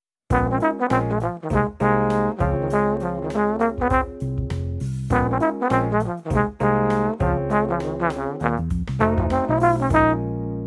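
Bach 36 tenor trombone playing a quick, bluesy jazz line built on an A-flat major pentatonic with a flat third, inflected with scoops, grace notes and vibrato, over a backing track with keys and bass. The line starts just after the beginning and runs in several phrases with short breaks.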